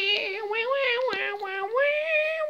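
A child's high voice giving a long wordless call on held notes, stepping up in pitch near the end.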